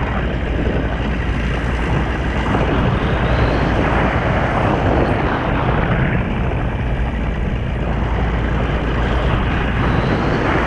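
Paramotor engine and propeller running steadily in flight, with wind rushing over the microphone.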